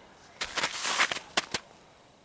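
Snow crunching under a bare hand pressing into packed snow: a crackly stretch of about a second, then two sharp snaps.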